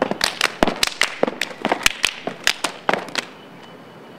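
Step-dance routine: a fast run of sharp hand claps, body slaps and foot stomps, about six or seven a second, stopping about three seconds in.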